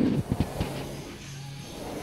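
Background music playing quietly in the room, with a few handling knocks on the phone in the first half-second.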